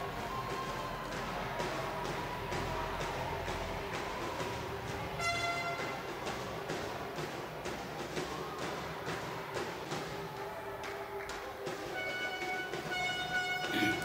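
Sports-hall ambience at a basketball game: a steady background of crowd and hall noise with scattered short knocks, and brief high tones about five seconds in and again near the end.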